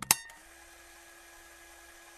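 Two quick clicks right at the start, then a faint steady background hum with one constant low tone.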